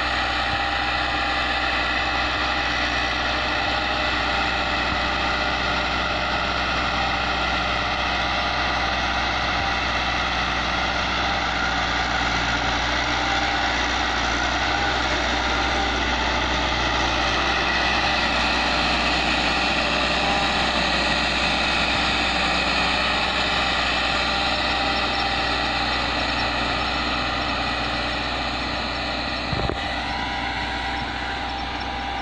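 Farm tractor's diesel engine running steadily under load as it pulls a ridging implement through tilled soil.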